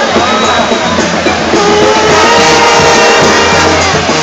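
A second-line brass band playing amid a packed street crowd, with held horn notes from about a second and a half in and crowd voices underneath.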